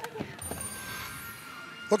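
Broadcast replay-transition sting: a short, high, shimmering electronic sound effect starting about half a second in, with thin steady tones trailing under it.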